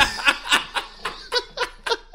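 Men laughing in short pulses, about four a second.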